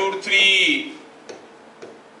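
A brief voice sound in the first second, then chalk ticking on a blackboard while writing, a few sharp separate clicks.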